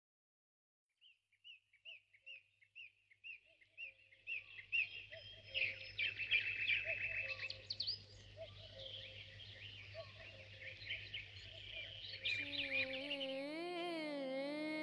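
Birds chirping: a single short call repeated about twice a second starts about a second in and swells into a dense chorus of several birds. Near the end, music with long held tones fades in over them.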